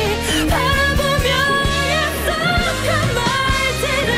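A woman singing a Korean pop ballad live, holding notes with vibrato over instrumental accompaniment with sustained low bass notes.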